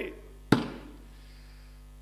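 A single sharp knock about half a second in, dying away quickly with a short ringing tail, over a steady low hum.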